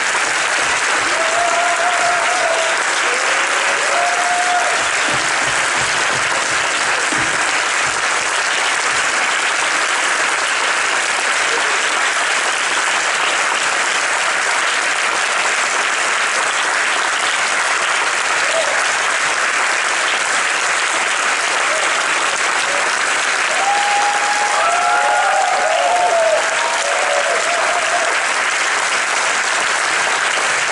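Large audience applauding steadily and at length, with a few short cries from the crowd rising above it a couple of seconds in and again near the end.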